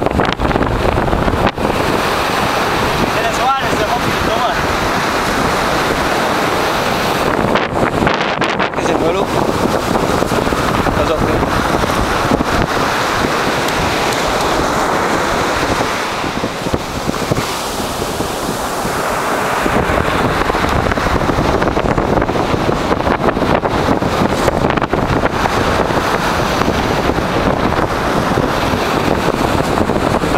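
Strong wind buffeting the microphone, with surf breaking on the shore beneath it, steady throughout apart from a brief lull about halfway.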